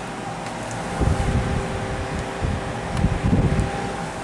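Electric box fan running on power from a 400-watt inverter, with a steady motor hum. From about a second in, its airflow buffets the microphone in uneven gusts.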